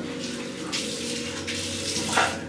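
Water running from a tap into a bathroom sink, the rush strongest in the middle.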